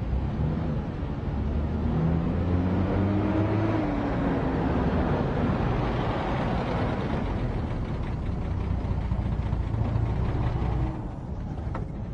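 Vintage Mercedes-Benz sedan driving up, its engine running with the pitch rising a few seconds in, then easing as the car slows to a stop. The engine sound drops near the end, followed by a sharp click.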